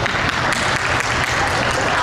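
Audience applauding, many hands clapping at once, with voices mixed in.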